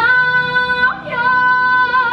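Female singing from an amplified castle stage show: long, steady held notes with a slight vibrato, breaking off briefly about a second in and picking up again.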